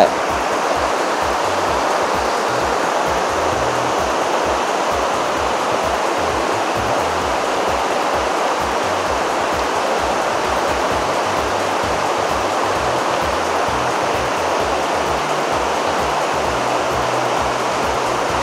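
Steady rushing of a shallow mountain river running over rocks, at an even level throughout, with a low music bass line underneath.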